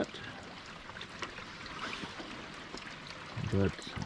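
Steady hiss of hard rain falling on a lake's surface, with a few faint ticks.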